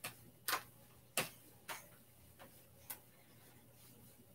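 Hands slapping against the torso as the arms swing across the body in a loosening exercise: a run of short sharp pats about every half second, the later ones fainter.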